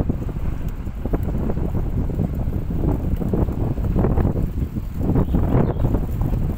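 Wind buffeting the microphone while riding along, a heavy low rumble that gusts unevenly.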